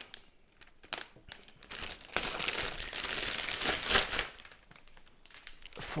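Plastic film wrap being peeled and pulled off a cardboard laptop box, crinkling, with a few small clicks at first and the loudest, densest crinkling from about two to four seconds in.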